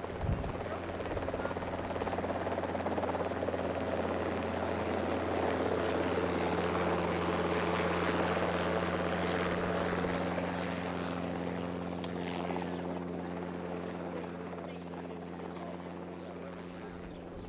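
Helicopter hovering low, its steady rotor and engine noise swelling to its loudest near the middle and then fading away.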